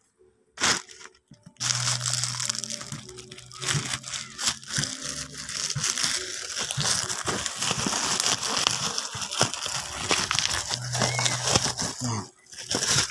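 Plastic courier pouch crumpling and crackling as it is handled and torn open, starting about a second and a half in, with many small crinkles and clicks.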